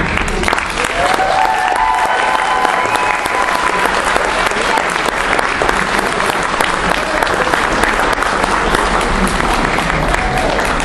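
Audience applause begins just as the music stops and carries on as dense, steady clapping, with a few voices from the crowd mixed in during the first seconds.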